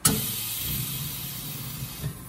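DDEC VI injector nozzle on a pop tester opening with a sharp pop, followed by the hiss of atomized fuel spraying into the collection chamber that fades over nearly two seconds.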